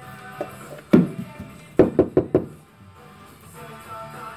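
Background music playing steadily, with one sharp knock about a second in and a quick run of four knocks around two seconds in.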